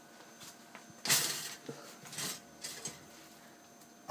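Pop-up toaster being handled and the toast taken out: a clatter about a second in, then a few light knocks.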